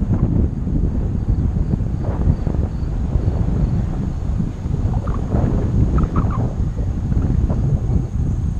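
Wind buffeting the camera microphone while riding along a road: a loud, uneven low rumble throughout. A few faint short higher sounds come through in the middle.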